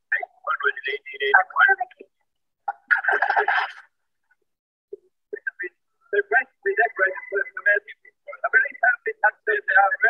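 Archival radio recordings of voices, thin and narrow as if heard over a telephone, coming in broken snatches as the installation's touchpads are played, with a noisy burst about three seconds in.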